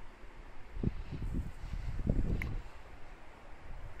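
Wind buffeting the camera microphone in uneven low gusts, with a faint click about two seconds in.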